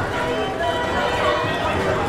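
Indistinct voices and chatter of riders on a running Herschell-Spillman track-style carousel, with music playing underneath in long held notes.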